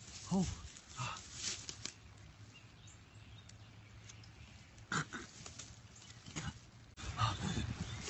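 A man's pained vocal noises: an "oh!" at the start, then short strained grunts and gasps, coming again around the middle and near the end, with quiet stretches between. He is gagging on a mouthful of habanero-hot dog-food sludge that he can't swallow.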